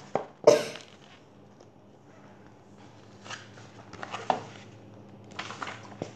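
Paper pages of a picture book rustling as the book is handled and leafed through: a sharp rustle about half a second in, a few soft taps later, and more rustling of turning pages near the end.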